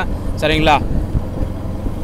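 A person's voice saying one short word about half a second in, over a steady low background rumble.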